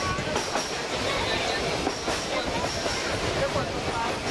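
Narrow-gauge train running at speed, heard from an open-sided coach: a steady rolling rumble of wheels on rail, with a faint repeating high ring from the running gear.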